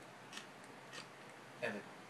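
Two short, crisp handling clicks from a small shiny object being fiddled with in a child's hands, about a third of a second in and again at one second. A voice says "Evan" near the end.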